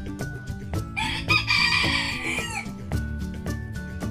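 A rooster crows once, about a second in, for under two seconds, its call dropping in pitch at the end. It is heard over background music.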